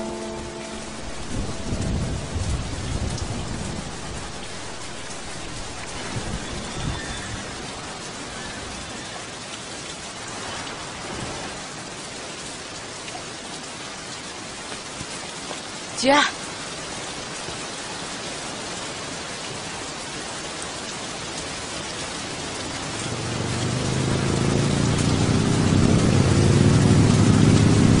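Steady heavy rain falling on pavement, with low rumbles in the first few seconds. A voice calls out once about halfway through. From near the end, motorcycle engines grow louder and rise in pitch as they approach, becoming the loudest sound.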